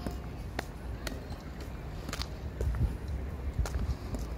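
Footsteps of a person walking, sharp steps about twice a second over a low steady rumble.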